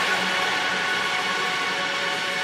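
Electronic music breakdown: a sustained synthesizer pad of several steady tones over a hissing noise layer, with no drums or bass.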